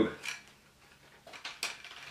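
Hard plastic parts of a Jinbao oversized Nero Rex Talon transforming robot figure clicking and clacking as they are handled and moved: a couple of faint ticks, then a short run of sharper clicks near the end.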